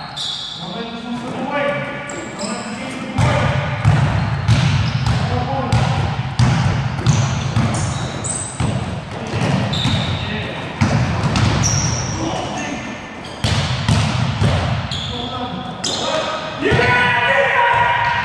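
A basketball bouncing on a gym court with sneakers squeaking, echoing in a large hall.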